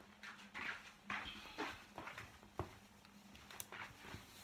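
A few light knocks and clicks of tools and small objects being handled, with a sharp click about two and a half seconds in.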